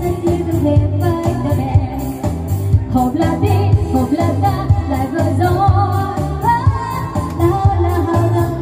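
A woman singing into a microphone over live electronic-keyboard band accompaniment with a steady, heavy bass beat.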